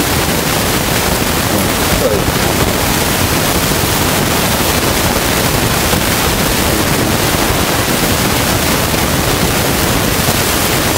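Loud steady hiss, like static, filling the whole recording from low to high pitches. A faint voice barely shows through about two seconds in.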